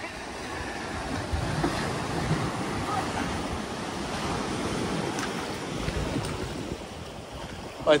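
Ocean surf washing onto a sandy beach, a steady rush that swells and eases, with gusts of wind buffeting the microphone.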